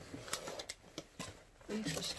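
Plastic snack bag crinkling as it is handled, a few short, soft crackles.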